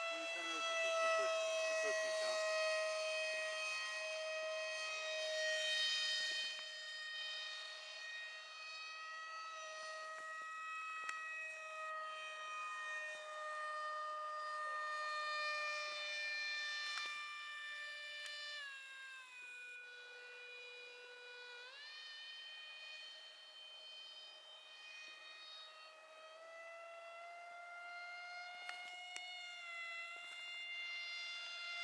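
Brushless electric motor and three-blade propeller of an RC foam F-18 jet in flight, giving a high steady whine that is loudest in the first few seconds and then fades a little. About two-thirds of the way through, the pitch drops sharply for about three seconds, then climbs back. The 2200kv motor with a 6x4 three-blade prop is a setup the pilot found underpowered.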